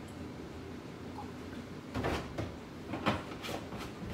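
Plastic gallon milk jug being handled on a kitchen counter: a few soft knocks and rustles about halfway through and again near the end, as the jug is set down and opened.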